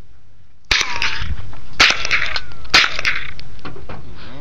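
Three rifle shots about a second apart, each with a short echoing tail.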